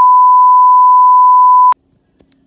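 Steady, single-pitch television test-tone beep, of the kind that goes with colour bars, cutting off abruptly near the end.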